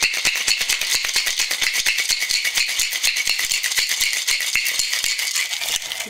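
Ice rattling inside a Boston shaker as a cocktail is shaken hard: a fast, continuous clatter that stops at the end.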